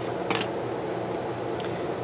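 Steady fan-like background hum, with one brief click about a third of a second in from a hand working stickers on a paper planner page.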